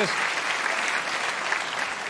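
Studio audience applauding, easing off slightly toward the end.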